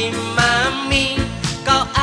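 Indonesian pop song: a lead vocal sung over bass and a steady drum beat.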